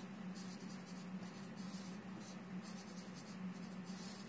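Dry-erase marker writing on a whiteboard: faint, scratchy strokes over a steady low hum.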